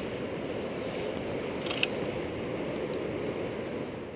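Steady rush of a small river's current running over rocks, with one short click a little under two seconds in.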